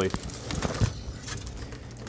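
Aluminium foil rustling and crinkling as gloved hands lift a foil-wrapped brisket out of a foil pan, with a few soft knocks about halfway through.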